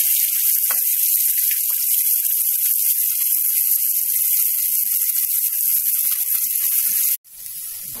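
Hot cooking oil sizzling in a kadai: a loud, steady high hiss that cuts off abruptly about seven seconds in.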